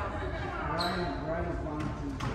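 Indistinct talking in a squash court between rallies, with a short high squeak a little under a second in.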